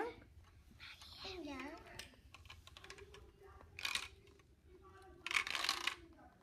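Plastic LEGO pieces rattling and clicking as a child handles and tilts a LEGO maze board: a short rattle about four seconds in and a longer one near the end. A child's voice is heard briefly about a second in.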